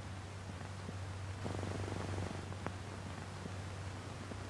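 Faint steady low electrical hum over a light hiss. The noise swells briefly in the middle, and there is a single small click near the end.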